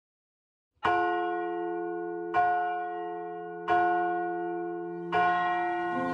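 Church tower bells struck four times in slow succession, about one and a half seconds apart. Each stroke rings on, with a low hum sounding under the next.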